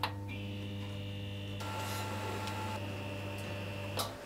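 A steady low electrical hum with a few higher steady tones above it, starting with a click and cutting off about four seconds later.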